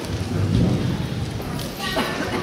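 A stage table being moved across a wooden stage floor: a low rumbling noise with a few knocks near the end as it is set down.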